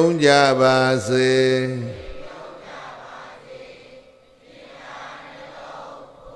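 A man's voice in Buddhist chanting, holding a long, steady note with a brief break about a second in, ending about two seconds in; a quieter, hazy murmur follows.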